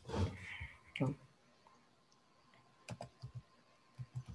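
Computer keyboard keys clicking as letters are typed: a quick run of about five keystrokes near the end.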